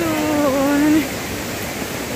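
Steady rushing of a large waterfall, with a woman's voice holding a drawn-out vowel over it for about the first second.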